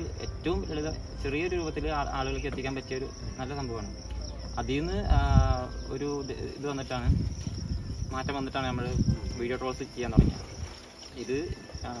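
People talking in Malayalam over the steady high chirring of crickets.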